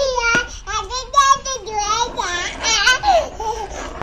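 Young children's high-pitched voices: a toddler laughing and babbling, with chatter that never forms clear words.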